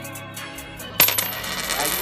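Coin sound effect: a sharp metallic clink about a second in, followed by a thin, high ringing that fades out over most of a second, over background music.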